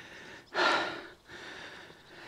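A man's single breath out, about half a second in, close on a clip-on microphone.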